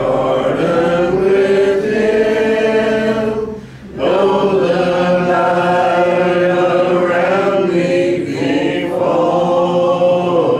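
Church congregation singing a hymn a cappella, with unaccompanied voices in long held phrases and a short breath break about four seconds in.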